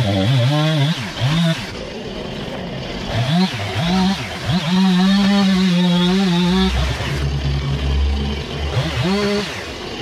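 Two-stroke gas chainsaw revving in short throttle bursts between idles, with one longer full-throttle run in the middle before it drops back to idle and revs once more near the end.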